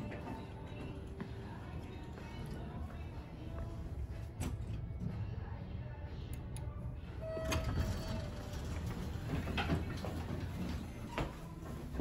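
A 1973 Dover hydraulic elevator's sliding doors working, with a short single tone about seven seconds in, over a low steady hum.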